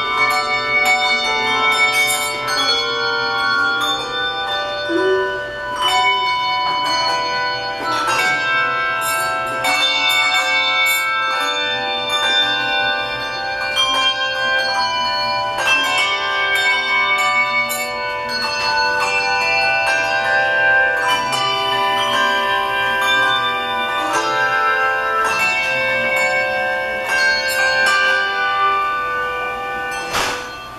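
Handbell choir playing a tune: many tuned handbells rung together in chords and melody lines, each note ringing on after it is struck.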